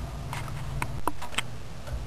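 A few light, scattered clicks and taps over a low steady hum.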